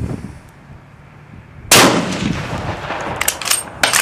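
A MAS 1936 bolt-action rifle in 7.5×54 French fires one shot a little before halfway through, followed by a long echo. Near the end come several sharp metallic clicks as the bolt is worked.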